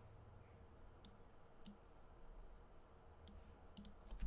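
Near silence with about five faint, sharp clicks at the computer, the last two close together near the end, as a handwritten equation is selected and dragged on the screen.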